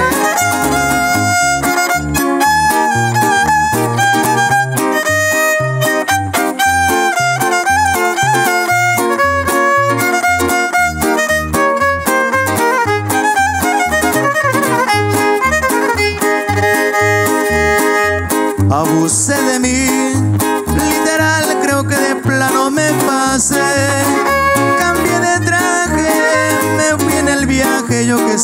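A live string trio plays an instrumental passage: a violin carries the melody over two strummed guitars, a small one and a large bass guitar, keeping a steady rhythm.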